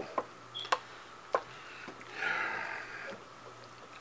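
A wooden spatula stirring thick shrimp alfredo in a frying pan: three light taps against the pan in the first second and a half, then a short stretch of scraping and stirring through the sauce about halfway through.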